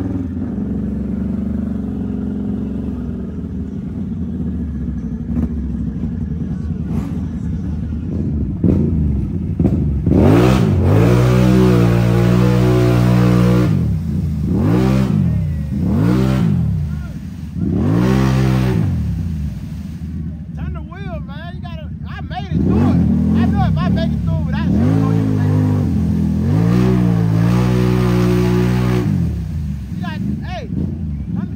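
A Can-Am ATV engine running steadily under way, then, after a cut, a Can-Am ATV revving hard in repeated surges, its pitch rising and falling again and again, as it spins its tyres through a deep mud hole.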